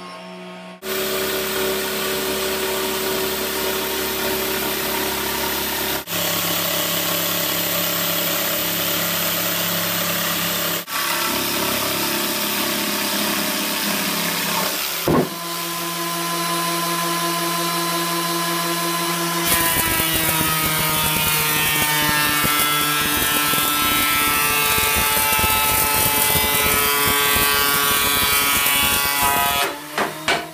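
Electric power tools running continuously on wood in a string of short clips that cut off and restart abruptly every few seconds. First comes a handheld power tool working on the grand piano's wooden case and pin-block area. Later a bench woodworking machine runs steadily and loudly through the last third.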